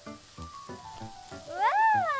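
Background music with a steady beat over a faint sizzle of pork grilling on a griddle; near the end a high voice rises and falls in a drawn-out exclamation.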